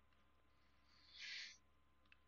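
Near silence with faint room tone, broken about a second in by one short, soft breath from the speaker.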